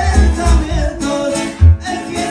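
Live sierreño music: two acoustic guitars strummed together under a sung melody, with deep bass notes pulsing underneath.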